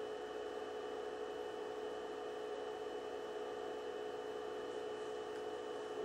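Steady background hum and hiss of a small room, with a few faint constant tones and no other sound.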